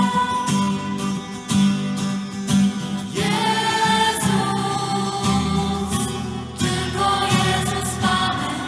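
Christian worship song: a group of voices singing together with instrumental accompaniment, in a slow, steady pulse.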